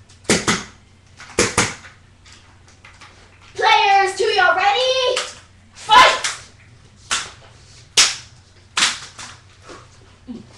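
Metal crutches clacking against each other in a mock fight: about eight sharp strikes, two quick pairs at first and then single ones, the loudest a little past the middle. A girl's voice calls out for about a second and a half between the strikes.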